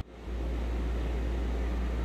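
Steady low mechanical hum with a hiss over it, unbroken and even. It drops out for an instant at the very start.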